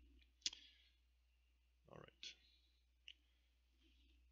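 Near silence with a few faint, isolated clicks: a sharp one about half a second in, a short soft sound near two seconds, then two smaller clicks.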